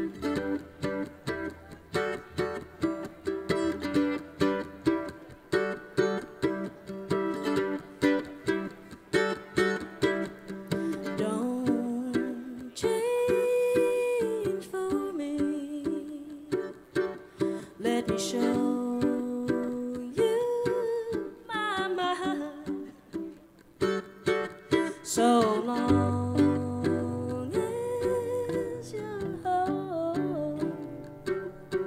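Bluegrass band playing an instrumental intro on acoustic strings. Picked mandolin and acoustic guitar notes keep an even rhythm, a fiddle comes in with long sliding notes about twelve seconds in, and an upright bass joins near the end.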